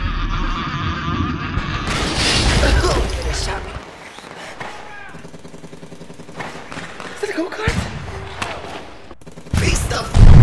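Pistol gunfire in a staged shootout, loudest in the first four seconds and quieter after.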